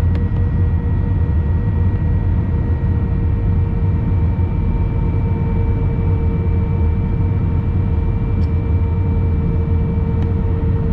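Steady jet engine and airflow noise heard inside an airliner cabin on final approach: a deep rumble with several steady whining tones from the engines.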